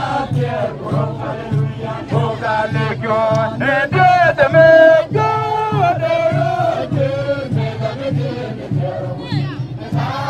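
A marching group singing together over a steady low beat. A strong voice holds one long note about four seconds in, the loudest moment.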